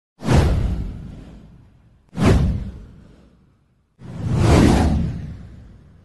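Three whoosh sound effects of a title-card intro. The first two hit sharply about two seconds apart and each fades away over a second or so. The third swells in more slowly a little before the end and then fades out.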